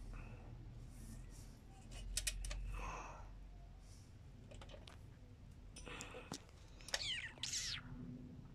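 Ratchet wrench clicking in short bursts while tightening a spark plug, with light metallic knocks and a short scrape near the end.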